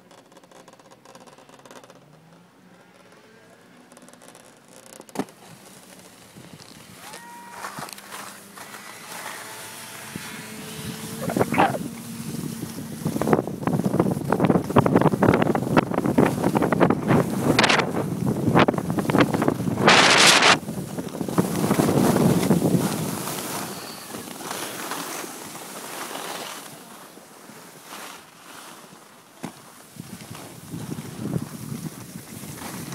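Skis scraping and hissing over packed snow while skiing downhill, with wind buffeting the microphone; quiet at first, it turns loud about a third of the way in, with a sharp hissing scrape about two-thirds through, then eases off near the end.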